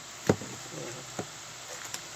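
Large knife chopping down through a roast duck onto a plastic cutting board: two sharp strikes about a second apart, the first louder.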